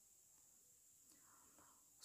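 Near silence: faint background hiss between narration.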